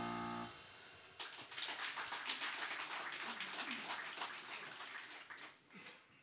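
Last strummed chord of an acoustic guitar dying away, then a small audience applauding for about four seconds, thinning out toward the end.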